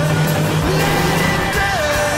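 A pop song over a BMW M235i's engine running at high revs.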